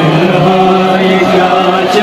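Male voices chanting a Kashmiri noha, a Shia mourning lament, holding long sustained notes.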